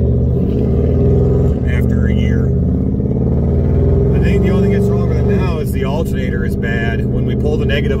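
A steady low drone of a Jeep's engine and road noise heard from inside the cabin while driving, under a man's talking.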